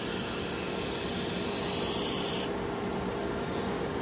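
Gas torch flame hissing steadily over a low workshop hum. The hiss cuts off suddenly about two and a half seconds in.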